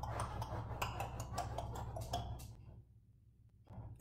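A quick, irregular run of light clicks or ticks over a low steady hum, stopping about two and a half seconds in.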